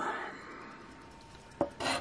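A metal coin scratching the coating off a scratch-off lottery ticket on a wooden table: a short knock about one and a half seconds in, then rasping scrape strokes near the end.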